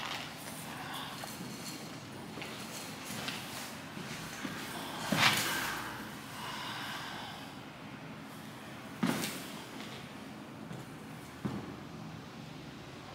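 Movement noise of a chainmail-and-armour costume as the wearer moves and gestures, with a few short louder noises, the loudest about five seconds in and others near nine and eleven and a half seconds.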